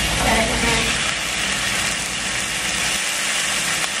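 Diced raw steak sizzling in a hot oiled frying pan as it is slid in off a cutting board: a steady hiss, with a low hum underneath that stops about three seconds in.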